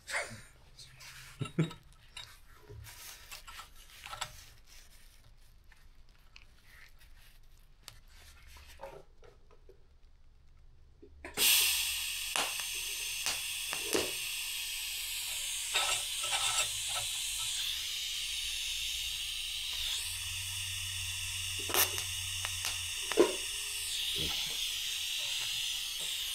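TIG welding arc on a stainless steel tube. After about eleven seconds of quiet with light handling clicks, the arc strikes suddenly. It runs as a steady high hiss with a few sharp crackles for about fifteen seconds, then fades near the end.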